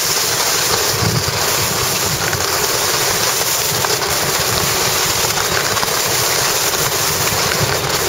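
Steady rushing of wind over the microphone, mixed with the hiss and scrape of skis running over soft, chopped-up spring snow during a downhill run.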